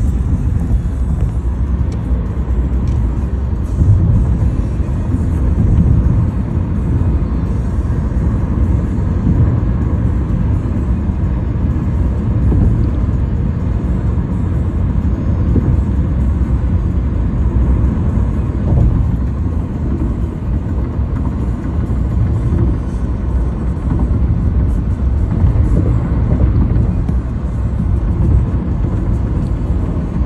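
Steady road and tyre noise heard inside the cabin of a car travelling at freeway speed, a continuous low rumble with no breaks.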